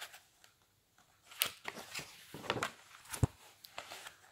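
Pages of a paper book being turned and handled one-handed: a few short paper rustles and taps, the sharpest about three seconds in.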